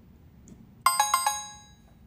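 A short electronic chime sound effect: four quick bell-like notes about a second in, ringing out within half a second, cueing a quiz question.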